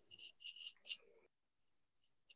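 Near silence on a video-call line: a few faint, brief high hisses in the first second, then the audio drops to dead silence.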